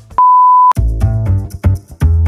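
A single steady electronic beep lasting about half a second, then outro music with a deep bass line and a regular beat comes in straight after it.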